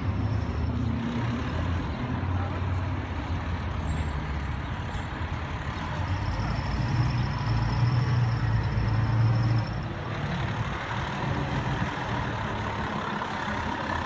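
FDNY tower ladder fire truck's diesel engine rumbling as the truck drives up and turns through the intersection, with city traffic around it. The engine grows louder for a few seconds in the middle, then eases off about ten seconds in.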